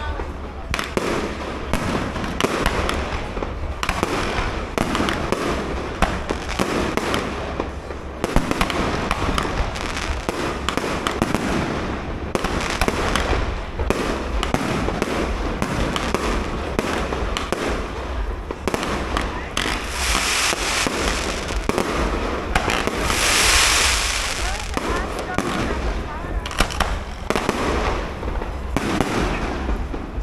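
Aerial fireworks display: shells bursting one after another in a steady run of bangs and crackles, with a denser stretch of hissing crackle about three quarters of the way through.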